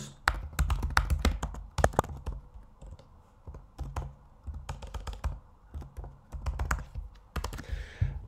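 Typing on a computer keyboard: irregular runs of key clicks with a short lull about three seconds in.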